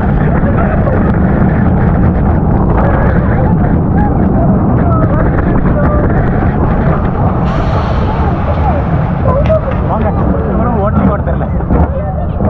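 Rolling Thunder steel roller coaster train running on its track: a loud, steady low rumble with wind noise, and a short hiss about seven seconds in. Voices call out over it.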